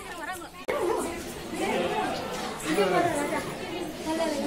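People chattering, several voices talking over one another, with an abrupt cut to louder talk less than a second in.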